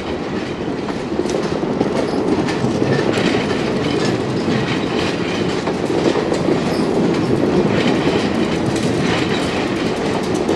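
Stainless-steel passenger coaches rolling past close by at steady speed: a continuous rumble of wheels on rail, with light wheel clicks over the track.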